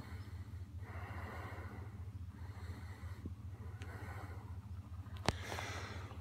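A person breathing close to the microphone, slow soft breaths a second or so long, over a steady low rumble. A single sharp click about five seconds in.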